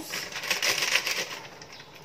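Foil sachet of powdered mousse mix crackling and rustling as it is opened and emptied over a stainless-steel mixing bowl: about a second of dense crinkling that fades away.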